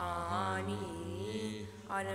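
A single voice chanting a phrase of Hebrew prayer in the traditional sung recitation style, the line bending gently in pitch and trailing off just before the next phrase begins.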